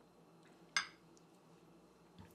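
A drinking glass set down on a coaster on a stone counter: one sharp clink about three-quarters of a second in, with a short ring after it.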